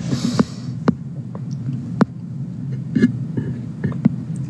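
A steady low hum with a few sharp clicks scattered through it, the clearest about two seconds in, and a short burst of hiss at the very start.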